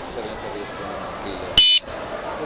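A single short electronic beep, one steady high tone and the loudest sound here, about a second and a half in, over a low murmur of voices and street noise.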